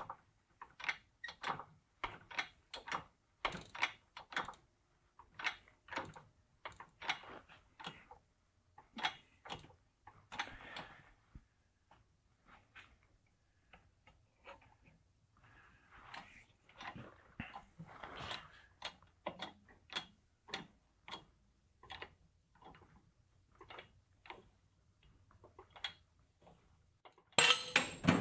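Faint, irregular sharp clicks and ticks, about two a second, with a few short rasping stretches, from a hydraulic shop press bending a 6013 stick-weld test plate while the weld begins to give way under load.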